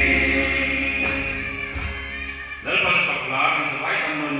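A man's singing voice through a microphone holding the song's last note over backing music, which dies away about two and a half seconds in. A man's voice then carries on through the microphone, with more broken, changing pitch.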